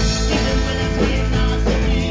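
Live rock band playing a song: electric guitars and a drum kit, loud and continuous.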